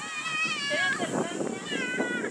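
A girl's high-pitched voice calling out twice, the pitch sliding down each time, over low background chatter.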